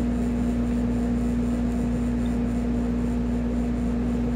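Steady room hum with one constant low tone and a low rumble beneath it, unchanging throughout.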